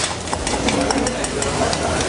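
Chopped celery, carrot, onion and herbs tipped from a steel bowl into a copper saucepan of olive oil and pushed in by hand, making a quick run of small clicks with a light sizzle as the vegetables start to sweat.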